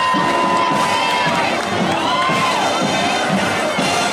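Crowd of spectators cheering, with children shouting. A long, high held cry stands out near the start, and another one rises and falls about two seconds in.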